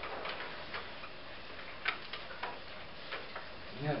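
Light, irregular clicks and rustles of paper sheets being handled on a conference table, over a steady room hiss. A man's voice comes in right at the end.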